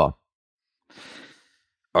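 A single soft breath from a man at the microphone, about a second in, a faint noisy sigh lasting under a second.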